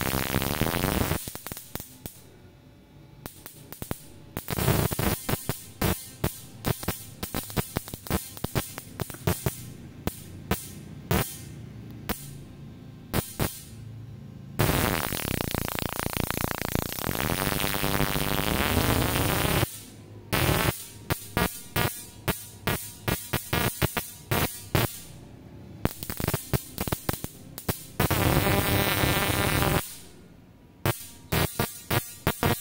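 Transistor-switched automotive ignition coil firing a spark plug with 440 pF capacitors across it, its frequency being turned up. The spark alternates between a steady high buzz and long stretches of irregular, ragged snapping. This is the sign of the coil struggling to fire the plug at high frequency, the equivalent of high RPM, without a CDI module.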